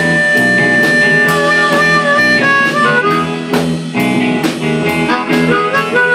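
Blues harmonica amplified through a vocal microphone, holding one long high note for about the first two seconds and then playing shorter bent notes, over a live blues band with electric guitar and a steady drum beat.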